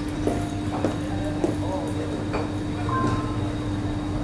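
Bar ambience: indistinct voices with several sharp light knocks and clinks over a steady low hum.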